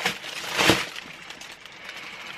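Packaging rustling as a rubber wellington boot is pulled out of its cardboard box, loudest a little past half a second in.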